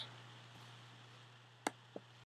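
Faint steady low hum with two sharp clicks near the end, about a third of a second apart, the first louder.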